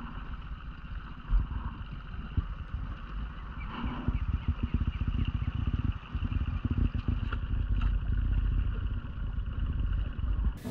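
Small dinghy outboard motor running steadily at low speed, with wind buffeting the microphone.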